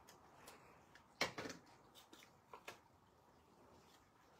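Stampin' Seal adhesive tape runner laying adhesive on the back of a small piece of paper: a few short, faint crackling clicks, the loudest about a second in and two more a little past the middle, with paper handling.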